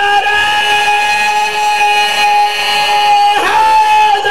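A man's voice holding one long, high, steady sung note into a microphone, chanting in a majlis address; it breaks off near the end and a second held note begins.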